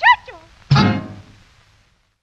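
The ending of a song sung in Portuguese: a last note slides down in pitch, then a loud closing chord is struck about 0.7 s in and rings out, fading away within about a second.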